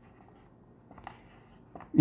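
Marker pen writing on a whiteboard: faint short scratchy strokes, a cluster of them about a second in, followed by a man's voice starting at the very end.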